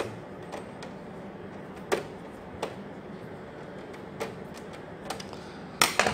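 Irregular light metallic clicks and taps of a screwdriver working a screw on a desktop PC's steel power supply. There are about half a dozen spaced a second or so apart, and the sharpest comes near the end.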